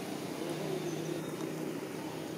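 A steady low hum, like a motor vehicle's engine running.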